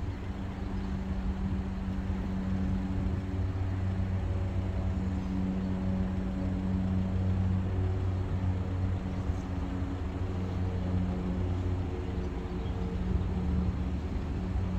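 Steady low engine drone: a deep hum with several fainter overtones above it that waver a little in pitch.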